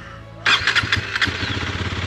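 KTM Duke single-cylinder motorcycle engine starting after standing unused for many days. It fires about half a second in with a short run of uneven firing, then settles into a steady idle.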